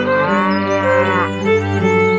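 A single cow moo lasting about a second and a quarter, over steady background music.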